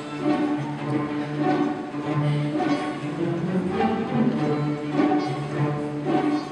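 A middle-school string orchestra of violins, violas, cellos and double basses playing a light, rhythmic passage, with sustained low notes under repeated shorter ones.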